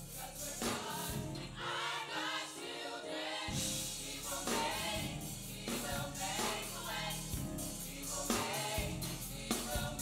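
Youth gospel choir singing in harmony with low accompaniment, amplified through the stage sound system. About a second and a half in, the low accompaniment drops away for about two seconds while the voices carry on, then comes back.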